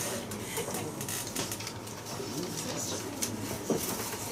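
Soft voices talking quietly, with scattered small clicks and knocks and one sharper click near the end: the low murmur of a small audience and performers between songs.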